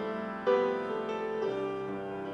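Piano playing slow, sustained chords, with a new chord struck about half a second in and left to fade.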